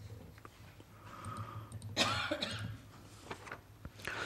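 A person coughing once, about two seconds in, over quiet room tone.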